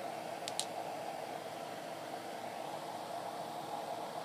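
Steady background hiss, with two light clicks about half a second in as a small glass nail polish bottle is picked up from among the others.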